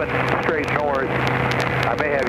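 Steady drone of a light aircraft's engine and propeller heard in the cockpit, with a constant hum under a brief burst of radio talk.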